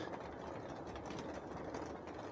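Faint, steady hum and hiss inside a rooftop tent while a diesel heater and a small clip-on fan run.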